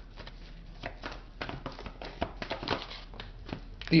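A deck of tarot cards being shuffled and handled: a quick, irregular run of soft card flicks and clicks.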